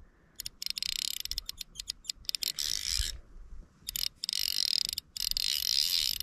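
Fly reel's click-and-pawl drag buzzing in quick spurts as a hooked fish takes line, stopping for about a second and a half midway before starting again.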